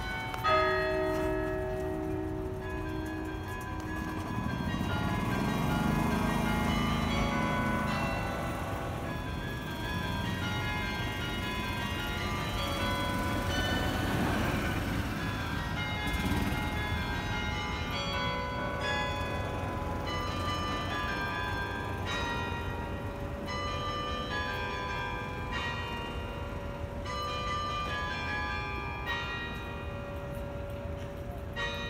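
The carillon bells of Sather Tower play a noon melody: bell notes are struck one after another, each ringing on under the next. A loud strike comes about half a second in.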